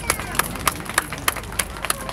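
Hand claps close to the microphone, evenly spaced at about three a second, over a low murmur of a crowd.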